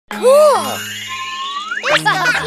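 Cartoon sound effect over children's background music: a held whistle-like tone that slides sharply upward near the end. A short high-pitched child's exclamation comes right at the start, over a steady bass note.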